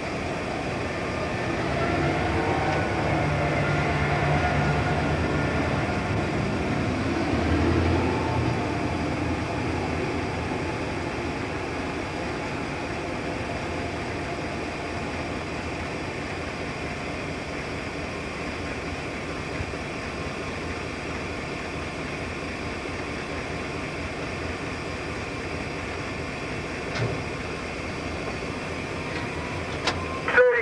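Diesel-electric locomotive running, heard from inside its cab as a steady engine and machinery noise. The engine note is louder and shifts in pitch for the first several seconds, peaking about eight seconds in, then settles to a steady level, with one short knock near the end.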